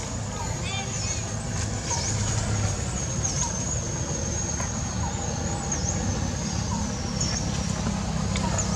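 Outdoor background sound: a steady low rumble, with a high thin whine above it that dips briefly in pitch about every second and a half, and a few short chirps about a second in.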